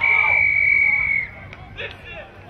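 A referee's whistle blown in one long, loud, steady blast lasting just over a second, stopping play at a tackle.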